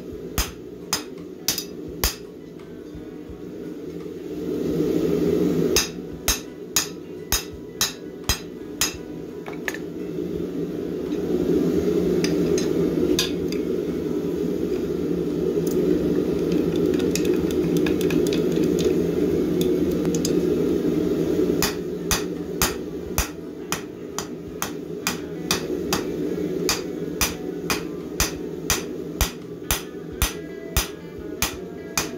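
Hand hammer striking hot steel tong jaws on an anvil, in runs of about two blows a second with pauses between. Under the blows runs a steady low roar that grows louder through the middle stretch, when the hammering mostly stops.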